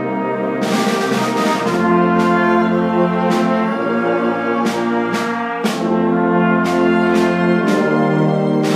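A rehearsing instrumental ensemble playing under a conductor: held chords that change every second or two, with several sharp, bright attacks that ring away.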